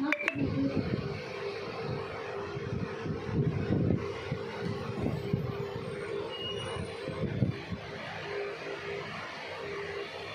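A steady hum over rumbling, uneven background noise, with a sharp click right at the start.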